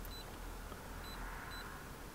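Key beeper of a Launch CRP123 OBD2 scan tool: three short, high beeps as its buttons are pressed, one just after the start and two more about a second in, half a second apart.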